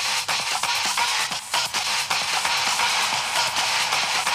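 Electronic dance music from a DJ set, played thin with no bass: a steady, hissy percussion pattern of regular ticks.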